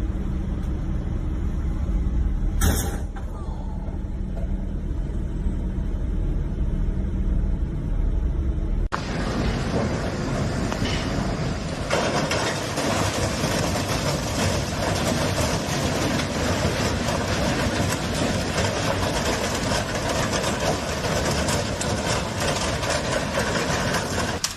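Steady low vehicle engine rumble with a brief hiss about three seconds in. About nine seconds in it changes abruptly to the steady rolling noise of a freight train of autorack cars passing below.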